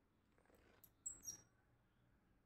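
A click and brief, high-pitched squeaks from the valve knob of a brass two-inlet gas torch being turned by hand, about a second in; otherwise near silence.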